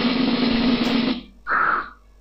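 PowerPoint's built-in 'Drum Roll' transition sound effect playing as a preview for about a second. It is followed, about a second and a half in, by a shorter, higher sound effect from the same list.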